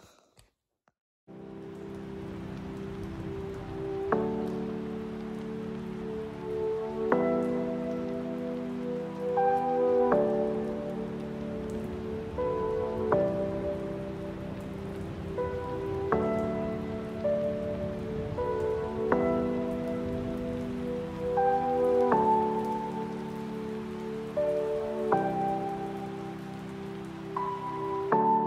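Background music: soft sustained keyboard chords changing about every three seconds, with a few high bell-like notes, over a steady rain-like hiss. It starts about a second in, after a brief silence.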